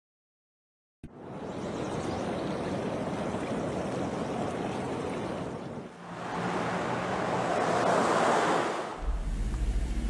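A steady rushing noise, then an SUV driving past on a city street, its noise swelling and fading over about three seconds. A low steady rumble sets in near the end.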